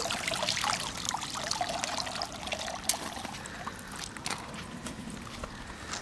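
Shallow lake water trickling and dripping, with small irregular splashes and drips, as a just-released carp swims away from the bank.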